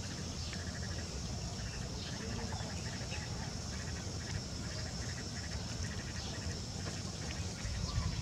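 Short, pulsed animal calls repeating every half second to a second, over a steady high-pitched hiss and a low rumble of outdoor background noise.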